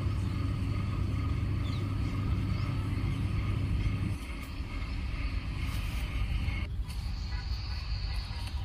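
Steady low rumble and hum of a motor-driven crop-spraying pump running. The deepest part of the rumble drops away suddenly about four seconds in.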